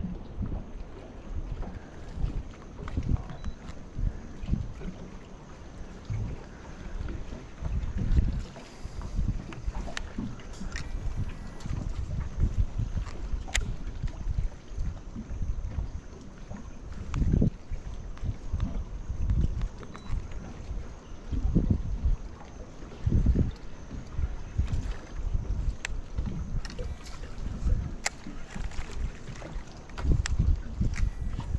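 Wind buffeting the microphone and water slapping against the hull of a small dinghy, in uneven gusts and knocks, with a few light sharp clicks here and there.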